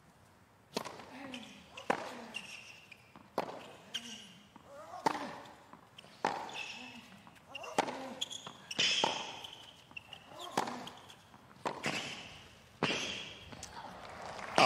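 Tennis rally on a hard court: a tennis ball struck by rackets about a dozen times, roughly one shot a second, with ball bounces in between. Each shot is followed by a player's short grunt.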